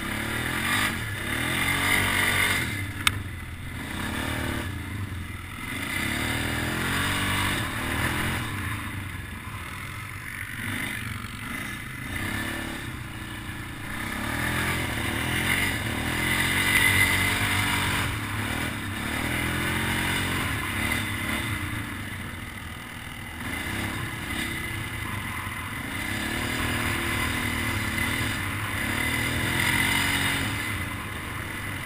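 A snorkeled mud ATV's engine being ridden over rough dirt, revving up and down again and again as the throttle is worked. A sharp knock comes about three seconds in.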